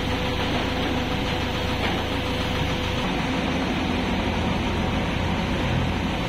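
Heavy tunnel drill rig with hydraulic booms running steadily: a constant low machine hum with a faint steady whine over it that fades out about halfway through.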